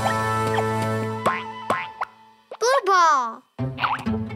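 Children's cartoon background music: a held chord with short plucked notes over it, then, about two and a half seconds in, a brief loud wobbling cartoon voice falling in pitch, followed by a moment's silence before the music resumes.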